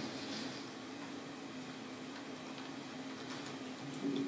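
Quiet room tone: a steady low hum in the hall with a few faint clicks.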